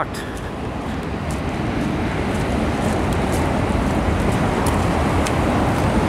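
Tyre hiss from a car on a wet road, a steady rush that grows louder over the first few seconds as the car approaches, then holds.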